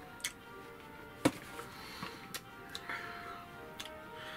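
Soft background music of steady held tones, with about five sharp, irregularly spaced clicks over it, the loudest about a second in.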